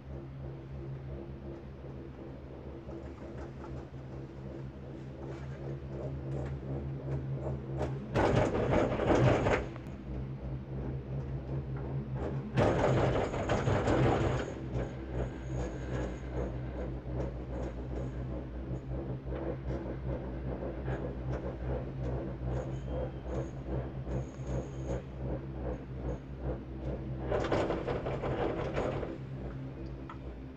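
Ride noise inside a Girak six-seat gondola cabin: a steady low hum with fast, even ticking as the cabin runs along the haul rope. Three times, about 8 s in, about 13 s in and near the end, it swells into a louder rattling rumble lasting a second or two, typical of the grip and rope running over a support tower's rollers.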